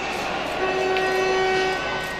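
A horn sounds in the ice rink hall, one steady low note with higher overtones, starting about half a second in and stopping shortly before the end.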